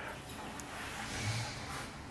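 Faint, steady background noise: room or ambient hiss with no engine running.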